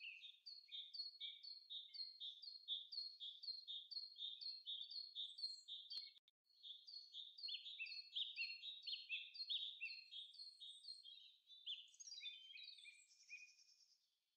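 Faint birdsong: a rapid run of short, falling chirps, about three a second, broken by a brief gap with a click about halfway through.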